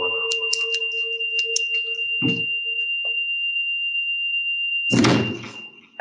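A steady high-pitched ringing tone, the sound of audio feedback from an unmuted microphone in a video conference call, likened to a fire alarm. A lower hum under it fades out about halfway. A few clicks and a short burst of noise come through, and a louder burst of noise comes near the end as the ringing cuts off.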